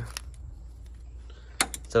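A few small sharp clicks and taps from handling: one early click, then a quick cluster of clicks near the end, over a low steady hum.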